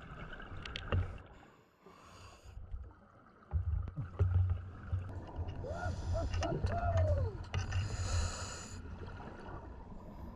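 Scuba breathing heard underwater: the regulator hissing and bursts of exhaust bubbles, over a low rumble of water moving past the camera from a few seconds in. In the second half, a few muffled voice sounds come through a regulator, along with a few sharp clicks.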